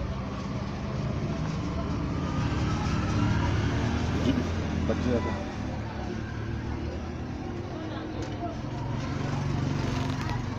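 Low engine rumble of road traffic that swells a few seconds in and again near the end, with indistinct voices behind it.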